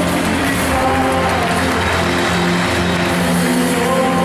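Live church worship music from a praise band with guitar, singers and choir, playing held chords over a steady bass.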